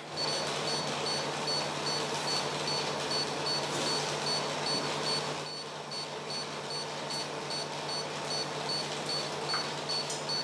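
Regular high-pitched electronic beeping from an operating-theatre monitor over the steady hum of an air-conditioner.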